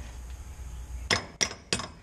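Three sharp metal-on-metal taps about a third of a second apart, each with a short ring, starting about a second in. A steel tool is tapping a bolt into the leaf-spring mount rather than forcing it, so the thread is not damaged.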